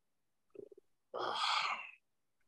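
A person's short breathy exhale, like a sigh, lasting under a second from a little after one second in, preceded by a faint brief voiced sound.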